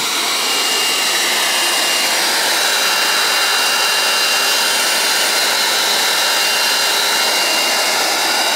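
DeWalt DXV04T wet/dry shop vacuum running steadily, a constant rush of air with a thin high whine from its motor. Its hose is set at a wall nest to suck in yellow jackets.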